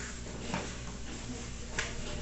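Faint soft taps of hands working a sheet of rolled-out dough, about half a second in and again near the end, over a steady low hum.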